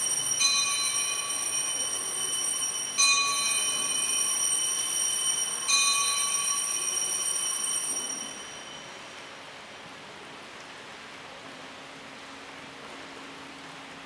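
Altar bells rung at the elevation of the host during the consecration: three rings about two and a half seconds apart, each with a bright, high metallic ring, fading out after about eight seconds to faint room tone.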